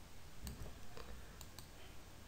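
A few faint, separate clicks of a computer mouse, about four in two seconds.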